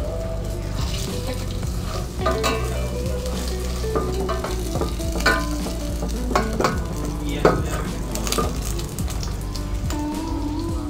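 Shrimp-and-cheese taco in a corn tortilla sizzling steadily as it fries in an enamel pot, with a slotted spatula scraping and knocking against the pot several times.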